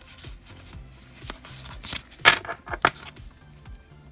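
Pokémon trading cards being handled and slid against each other in the hands, with two sharp card clicks a little after halfway, over soft background music.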